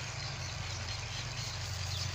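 Threshing machine running some way off: a steady low drone with a hiss over it.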